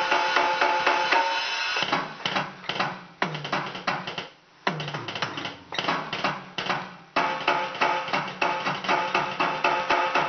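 Electronic drum kit played in an improvised groove with cymbals. About two seconds in the steady beat breaks into choppier fills with a brief gap a little after four seconds, and a steady, even beat returns at about seven seconds.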